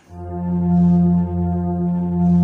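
Yamaha electronic keyboard sounding a low held note with a sustained, organ- or brass-like voice. It swells in at the start, dips briefly about a second in and swells again.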